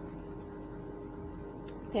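Steady low background hum of the recording with a few faint fixed tones, and a voice starting just at the end.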